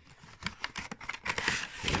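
Plastic blister packaging of a Hot Wheels three-pack crinkling and clicking as it is handled and the cars are worked out of it through a slit in the side.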